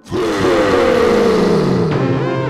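A sudden, loud sound-effect sting for a production logo: a hissing rush with a pitch that falls steadily over about two seconds. The hiss cuts off just before the end as music takes over.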